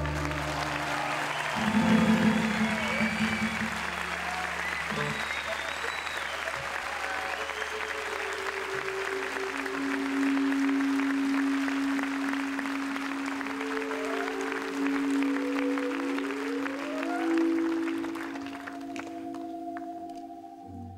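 Concert audience applauding, with sustained instrument notes held over the applause; the applause thins out near the end.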